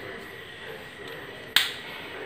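A single sharp click about one and a half seconds in, standing out against quiet room hiss.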